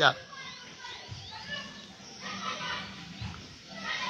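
Faint, distant voices calling in the background.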